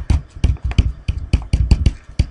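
A stylus tapping and scraping on a pen tablet while words are handwritten: a fast, uneven run of sharp taps, about six or seven a second.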